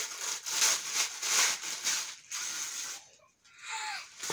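Thin plastic bag crinkling and rustling in quick, crackly handfuls as a child pulls sticker sheets out of it, stopping after about two seconds. Right at the end a child's excited voice starts.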